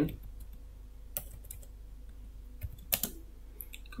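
Computer keyboard keystrokes, a few separate key presses spread unevenly, the loudest about three seconds in, over a faint steady low hum.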